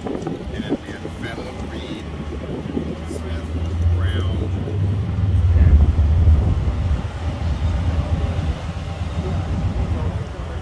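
A motorcycle engine running, growing louder from about four seconds in and easing after seven, over people talking in the background.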